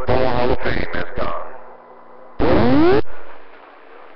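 CB radio receiver audio: a voice transmission ends about a second in and drops to static. About two and a half seconds in comes a short keyed burst carrying rising, sweeping whistle tones, then a steady background hiss.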